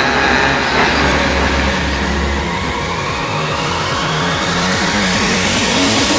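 Psytrance build-up: a held deep bass note for the first couple of seconds, then a rising synth sweep climbing steadily through the rest.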